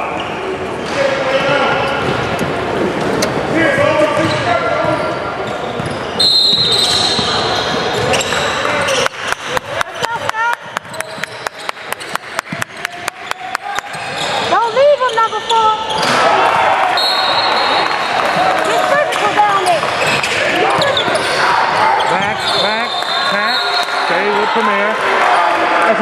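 A basketball bouncing on a hardwood gym floor, with a run of quick, evenly spaced bounces about five a second from about a third of the way in, under the voices of players and spectators echoing in the gym. A few short high squeaks come through as well.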